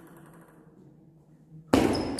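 Table tennis serve: a hushed pause, then near the end a sudden loud thump as play starts, followed by the first high, ringing clicks of the ball on paddle and table.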